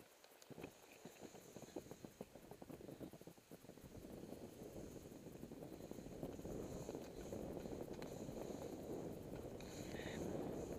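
Skis on a packed snow trail: a few seconds of irregular crunching and clicking, then a steady rushing hiss of sliding over snow that grows louder as speed builds.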